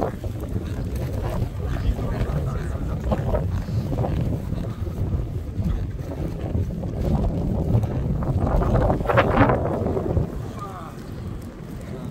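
Wind buffeting the microphone, a heavy low rumble, with people talking in the background, loudest near the end.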